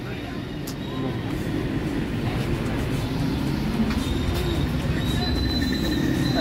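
Steady low rumble of road traffic, with a faint high whine coming in about four seconds in.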